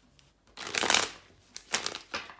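A deck of tarot cards being shuffled by hand in two bursts: a loud rustling run of card flicks about half a second in, then a shorter one near the end.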